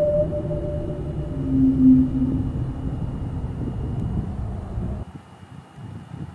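Air blowing across the phone microphone, a low rumbling buffet with a faint steady high whine behind it; the rumble cuts off about five seconds in, and a short brief tone sounds about two seconds in.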